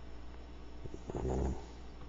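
A short, low vocal sound lasting about half a second, a little past the middle, over a steady low hum.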